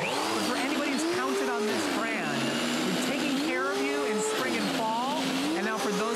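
Earthwise 12-amp corded electric snow shovel switching on and running steadily under load, its motor and rotor churning through heavy, wet, slushy snow.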